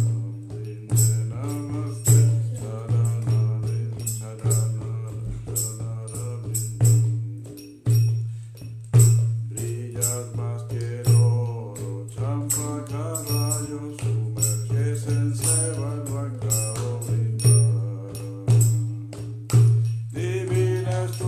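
A man singing a devotional chant to his own mridanga (khol) drum accompaniment. The drum runs in a lively, uneven rhythm of deep, booming bass-head strokes and sharp, ringing high slaps under the voice.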